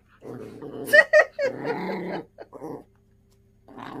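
A small Yorkshire terrier growling in several short bouts, held in its owner's arms.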